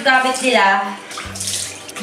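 Water running from a bathroom sink tap while hands splash it onto the face.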